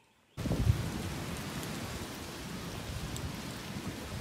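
Steady rushing noise with a low rumble underneath, starting abruptly about a third of a second in after near silence.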